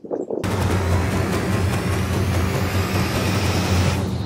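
Logo sting sound design: a loud whooshing swell with a deep steady bass rumble that starts suddenly about half a second in, with a faint rising sweep on top.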